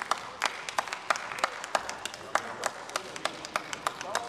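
Members of parliament applauding: a run of hand claps in which individual claps stand out, steady through the whole stretch.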